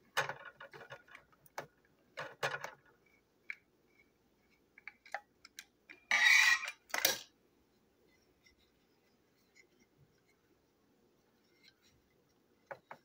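Small plastic clicks, ticks and rattles as a screwdriver works at a Tomy Fearless Freddie toy engine and its plastic body is taken off the chassis, with a louder scraping rustle lasting about a second, some six seconds in.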